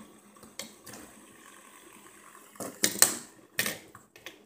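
Plastic fidget spinners clicking and knocking against a glass tabletop: a couple of faint clicks, then several sharp knocks close together past the halfway mark.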